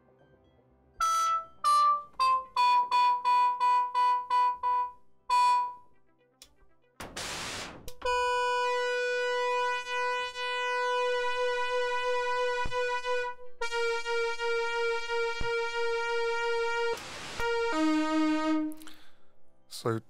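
Synthesizer notes from a four-voice polyphonic synth patch running live on an Axoloti board. A run of short notes steps down in pitch and then repeats. Then come two long buzzy held notes, the second one wavering, with a short burst of noise before each of them and a few quick notes near the end.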